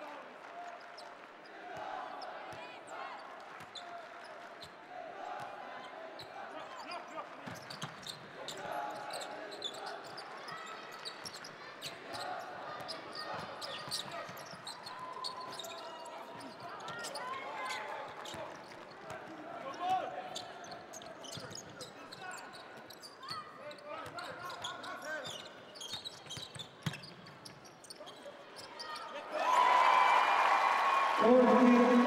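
Basketball game court sound: a ball bouncing on the hardwood floor during play, among players' shouts and short squeaks and knocks, with one louder knock about two-thirds of the way through.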